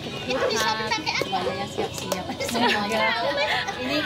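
Overlapping chatter of several adults and young children talking at once.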